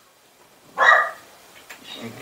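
A dog barks once, a short loud bark about a second in.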